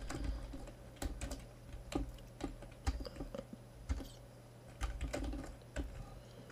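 Computer keyboard being typed on: a string of irregular, uneven keystroke clicks as a short command is entered.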